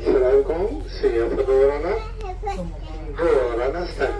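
Speech: a high-pitched voice talking in Spanish, over a steady low hum.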